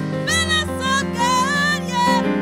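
A woman sings a worship song into a microphone, her voice gliding between held notes, over sustained keyboard chords.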